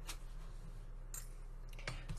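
Faint handling noise of strung bead strands being laid out on a craft mat, with a soft rustle about a second in and a light tick near the end, over a steady low electrical hum.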